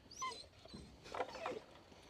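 A dog whining faintly in a few short, high whimpers.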